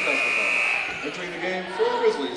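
A referee's whistle blast, one steady shrill tone lasting under a second, stopping play after the ball goes out of bounds for a turnover. Gym crowd voices carry on under it and after it.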